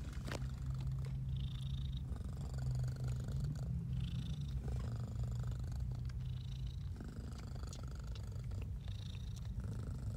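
Domestic cat purring steadily, close to the microphone, with a short high sound every two to three seconds.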